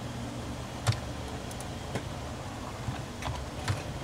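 Computer keyboard keystrokes and mouse clicks: about five sharp clicks at irregular intervals, the loudest about a second in, over a steady low hum.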